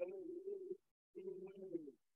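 A man singing a prayer song with a hand drum: two short phrases of long, low held notes separated by a brief pause, with a sharp drum stroke at the start and another near the end.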